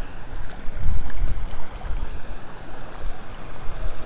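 Stream water running, with an uneven low rumble of wind on the microphone that swells about a second in.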